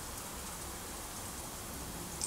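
A steady, even hiss like falling rain, with no distinct strikes or tones.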